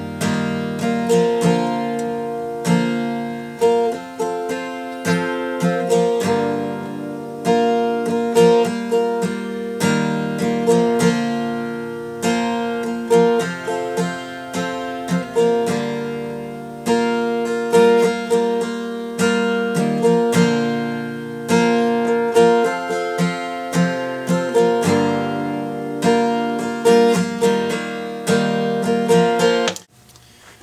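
Capoed acoustic guitar strumming a slow, steady four-chord progression of G, D, Em7 and Cadd9 shapes at the third-fret capo, sounding in B flat. Each strum rings out and decays before the next.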